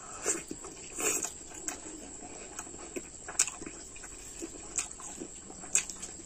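Close-up mouth sounds of a man eating rice and curry by hand: chewing and wet lip smacks as irregular short clicks, with a longer noisy burst about a second in.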